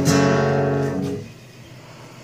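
Acoustic guitar, tuned down to C sharp, strummed once: a final chord that rings and dies away after about a second.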